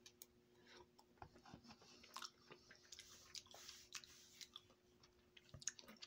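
Faint chewing of a mouthful of hot instant rice and noodles: soft, irregular mouth clicks and smacks.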